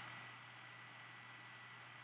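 Near silence: faint recording hiss with a thin, steady high tone and a low hum underneath.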